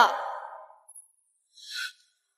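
A woman's short, breathy sigh near the end, after an echoing line of speech fades out.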